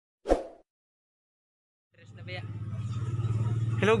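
A short, loud pop sound effect as a subscribe-button animation ends, then silence. From about two seconds in, a steady low engine-like hum fades up and grows louder, and a man says "Hello" at the very end.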